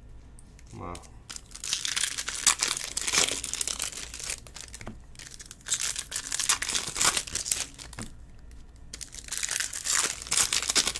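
Foil wrappers of trading-card packs crinkling and tearing as they are ripped open and handled, in three crackly spells with short lulls between.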